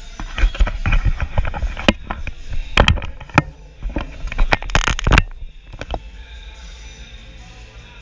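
A rapid run of knocks and rattles from a camera being handled and set in place, ending in a longer, louder clatter about five seconds in.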